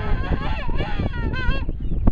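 King penguins calling in a colony: overlapping, warbling trumpet calls that waver up and down in pitch, with the last call ending about one and a half seconds in.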